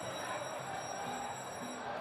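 Steady, low background noise of a boxing stadium, a murmur with no distinct events and a few faint, steady high-pitched tones over it.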